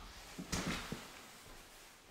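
A man getting up from a tufted leather office chair: rustling and a sharp knock about half a second in, then a few smaller knocks fading away within the first second.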